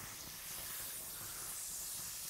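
Faint, steady hiss of bratwursts sizzling on the hot grate of a gas grill.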